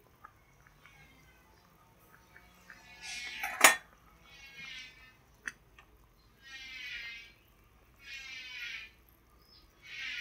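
A metal ladle clinks once against an aluminium soup pot a few seconds in, amid faint handling noise. A few faint, brief high-pitched sounds follow.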